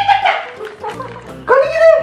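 A dog giving two short, high-pitched yelps, one at the start and one about one and a half seconds in, over background music.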